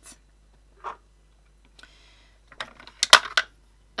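Plastic makeup packaging being handled in a clear acrylic organizer tray: a few light clicks and knocks. The sharpest comes about three seconds in.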